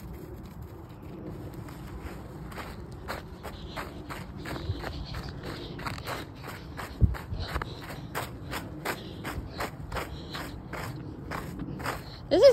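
Footsteps of a person walking through snow, a steady pace of about two steps a second, with one low thump about seven seconds in.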